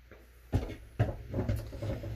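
Hard plastic knocks and scrapes as a pump sprayer's head is fitted onto its plastic bottle and screwed down. Two sharper knocks come about half a second and a second in, followed by smaller handling sounds.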